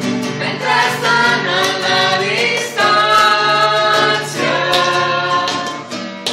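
A small group singing a song together, their voices holding long notes, over a strummed acoustic guitar.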